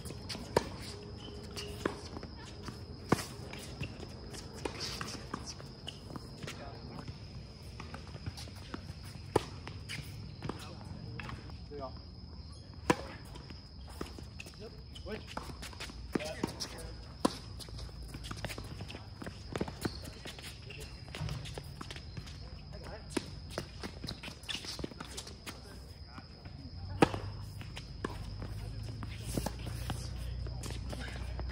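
Tennis balls being struck by rackets and bouncing on a hard court in doubles rallies: sharp, irregular pops every second or few, the loudest about 27 seconds in, with players' footsteps on the court. A faint steady high whine runs underneath.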